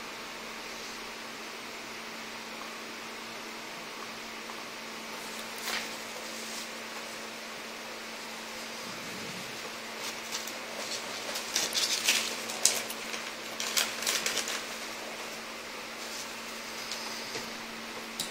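Steady low room hum with a faint constant tone. From about ten seconds in, a run of light clicks and rattles as small laptop parts are handled.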